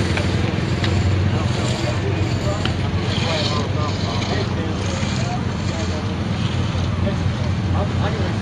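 Small engine of a ride-on infield groomer running steadily, with people's voices chattering in the background.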